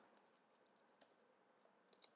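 A few faint, sharp computer keyboard keystroke clicks, spaced irregularly, against near silence.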